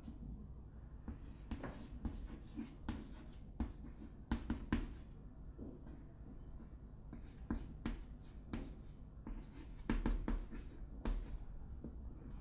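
Chalk writing on a chalkboard: irregular short scratches and taps as a formula is written stroke by stroke, with brief pauses between strokes.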